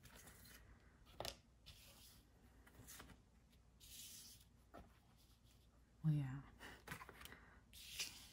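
Tarot cards being dealt one by one onto a cloth-covered table: a few faint soft taps and a brief papery slide.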